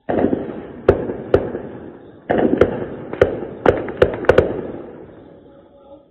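Gunfire and blasts echoing at night: about ten sharp shots over the first four and a half seconds, each trailing off in a long echo before the next, then fading away.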